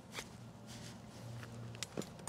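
Faint rustling from a climber's gear and movement, with a soft click just after the start and two more near the end.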